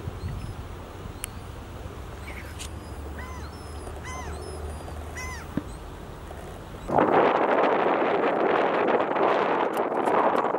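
Birds calling in a series of short chirps over a low rumble. About seven seconds in, this cuts to a much louder, steady rushing noise.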